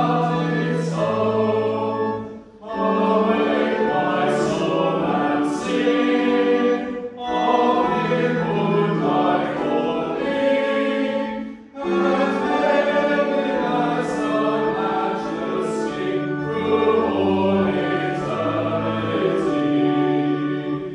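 A church congregation singing a hymn line by line, with sustained organ chords beneath. The music breaks briefly between phrases about every four to five seconds.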